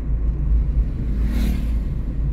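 Steady low rumble of a car driving along a paved road, with a brief hiss that swells and fades about one and a half seconds in.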